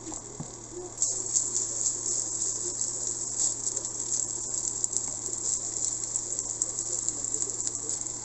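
Chicken-mince cutlets frying in a little hot oil in a frying pan, a dense crackling sizzle that starts sharply about a second in and runs on steadily.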